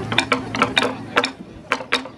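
Taiko sticks (bachi) striking sharply as the taiko piece begins: about nine short, crisp hits that start suddenly, in quick, uneven groups of two and three.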